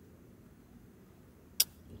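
Faint low hum inside a car, with one sharp click about one and a half seconds in.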